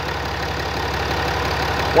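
The 6.7-litre Cummins inline-six turbo diesel of a 2016 Ram 2500, heard up close from the open engine bay, idling steadily with an even diesel clatter; it runs very smooth.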